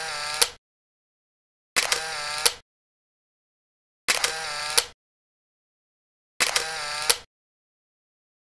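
A camera-shutter sound effect repeated four times, about every two seconds: a sharp click, a short whirr and a second click each time, with dead silence between.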